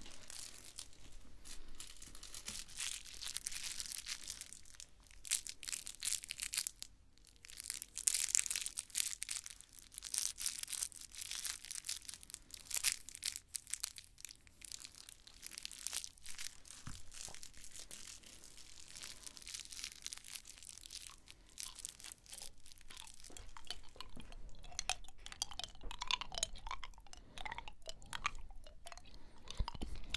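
Crinkling, crackling and tearing of a crinkly material handled close to the microphone, in a dense run of fine crackles that pauses briefly about seven seconds in.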